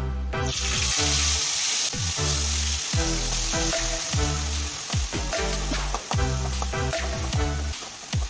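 Wet curry-leaf paste hitting hot oil in a kadai: a loud, steady sizzle of frying starts about half a second in and keeps going. Background electronic music with a steady beat plays over it.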